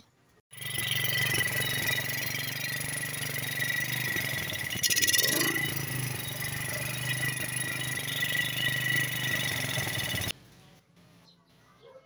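Small single-cylinder motorcycle engine, a Suzuki Shogun FL125, running at idle: a steady low hum under a thin high whine. A brief louder surge comes about five seconds in, and the sound cuts off suddenly about ten seconds in.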